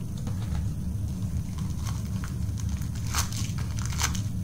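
Plastic blind-basket packaging crinkling and crackling as it is handled and opened, in scattered short bursts with the loudest a little after three seconds in, over a steady low hum.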